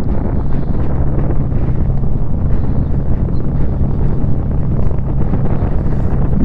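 Strong wind roaring over the microphone, with the steady low hum of a Suzuki V-Strom 650's V-twin engine running at constant speed underneath.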